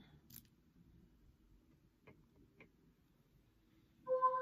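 Near silence, with a few faint ticks: one just after the start and two more about two seconds in, half a second apart.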